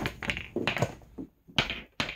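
Pool balls clacking against one another and the cushions and dropping into the pockets after a trickshot: a string of sharp knocks, the loudest about a second and a half in.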